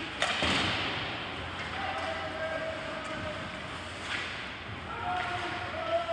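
A sharp knock against the rink boards during ice hockey play, about a quarter second in, echoing in the arena. Faint drawn-out shouts follow later on.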